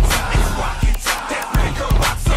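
Hip hop music with a steady drum beat.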